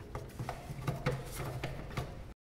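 Gloved hands working at a coolant hose connection under a throttle body: a scattered series of light clicks and taps on metal and plastic parts.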